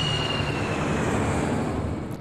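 Jet airliner flying past: a steady engine roar with a high whine that slowly falls in pitch, easing off a little near the end.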